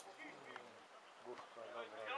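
Faint, distant voices calling out, with a few light clicks.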